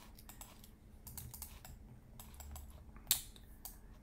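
Computer keyboard typing: light, irregular key clicks, with one louder click about three seconds in.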